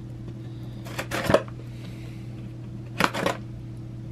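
A cardboard shipping box being handled and opened by hand, with two short rasping bursts of cardboard and tape noise about two seconds apart. A steady low hum runs underneath.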